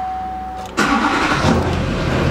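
A steady electronic beep lasts about a second. About three-quarters of a second in, a 2005 Duramax 6.6-litre V8 turbodiesel cranks, starts suddenly and keeps running.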